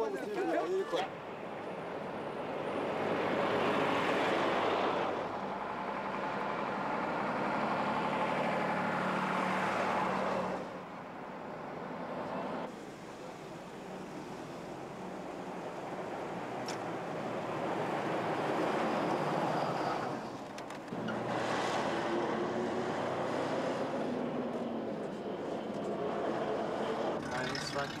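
Road traffic with armoured military trucks and cars driving past, engine hum and tyre noise swelling and fading as each vehicle passes. The sound changes abruptly about ten and twenty seconds in.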